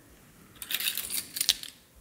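Screw cap being twisted off a glass oil bottle: a quick run of small, sharp clicks and scrapes lasting about a second, with the sharpest click near the end.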